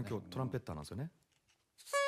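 Men talking in Japanese, then a short gap. Near the end a man's voice holds a steady pitched note.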